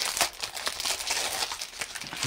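Thin clear plastic wrapper crinkling and rustling in irregular crackles as hands slide a sticker book out of it.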